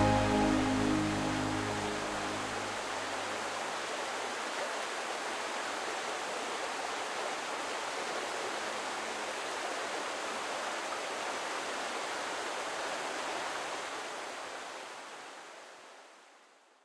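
The last notes of the song's music die away in the first couple of seconds, leaving the steady rush of a river running over rocky rapids, which fades out near the end.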